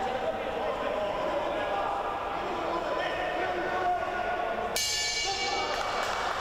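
Boxing hall crowd murmuring and calling out, then a ring bell sounds for about a second near the end, signalling the end of the bout.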